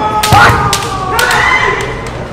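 Kendo fencers' kiai shouts with several sharp clacks of bamboo shinai striking, and a heavy foot stamp on the wooden floor about half a second in. A long shout is held through the second half.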